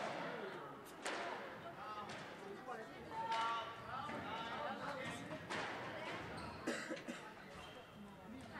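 A few sharp knocks ringing briefly in a squash court hall, under people talking nearby.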